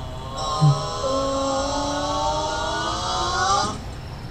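A short low knock about half a second in, then a single long held tone, slowly rising in pitch for about three seconds, with a steady high hiss above it, from the cartoon's soundtrack.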